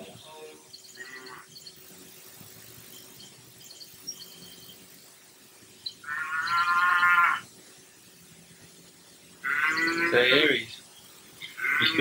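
Two long, drawn-out vocal calls, one about six seconds in and a louder one about ten seconds in, after a quiet stretch.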